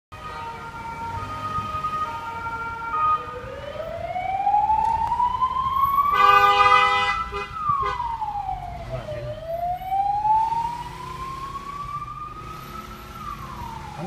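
Ambulance siren heard from inside a car as the ambulance approaches. It starts in an alternating two-tone pattern, then switches to a slow wail that rises and falls twice. A held horn blast about six seconds in is the loudest moment.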